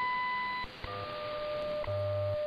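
WWV shortwave time signal on 10 MHz received over a web SDR: a high beep of just under a second marking the minute, then after a short gap a steady lower tone broken by a tick once a second, with a low buzzing time-code hum underneath.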